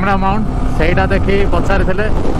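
A man's voice, words not made out, over the steady rush of wind and the engine of a Yamaha sport motorcycle riding at about 80 km/h.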